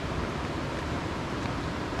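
Steady, even rushing of a big waterfall, Rockway Falls, heard from up the trail.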